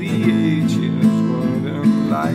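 Song with an acoustic guitar strummed steadily, played between sung lines.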